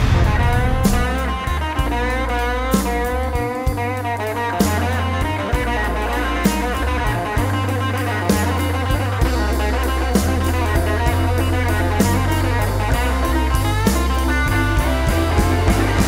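Live blues-rock band playing: an electric guitar lead with wavering, bending notes over bass and a drum kit keeping a steady beat.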